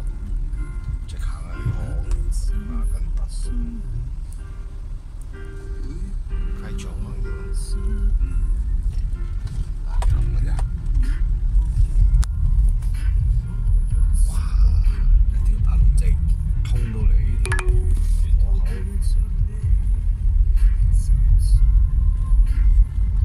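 Car cabin rumble from road and engine while driving, growing louder about ten seconds in, with music playing underneath.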